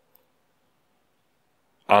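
Near silence between spoken words, broken by one faint, brief click just after the start; speech (the word "unsafe") begins right at the end.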